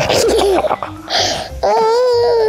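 A toddler laughing, then a long high-pitched squeal starting near the end, over background music.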